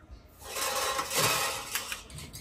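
Handling noise: a rubbing, scraping rasp of about a second and a half while a glass apothecary jar and its lid are handled.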